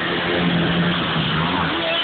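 A group of motorcycles riding past, their engines running with a steady note that drops slightly about a second and a half in.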